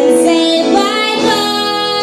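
Live music: a woman's voice holding long sung notes over piano and acoustic guitar accompaniment, moving to a new pitch about a second in.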